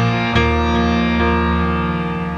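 Instrumental passage of live contemporary worship music: keyboard chords held and ringing, with a new chord struck about a third of a second in.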